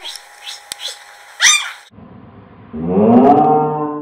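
A white cockatoo flapping on a man's hand gives one short, sharp squawk about a second and a half in. Near the end a man's voice lets out a loud, drawn-out exclamation.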